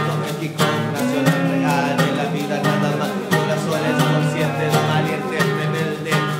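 Acoustic guitar strummed steadily while a man raps in Spanish over it, a live improvised session.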